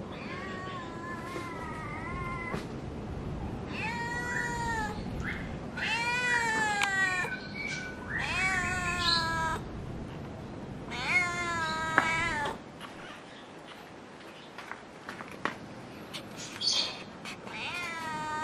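Tabby-and-white domestic cat meowing repeatedly: about six long, drawn-out meows a second or two apart, their pitch bending up and down.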